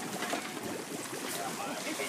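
Steady rushing hiss of water, the wash of a sailing yacht's hull moving past close by.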